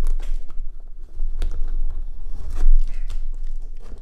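Hands tearing open a mailed package: irregular tearing and crinkling of the packaging, with low bumps from handling it.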